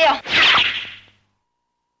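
A whip-like swish of a thrown metal yo-yo, a drama sound effect, fading out about a second in and then cutting to silence.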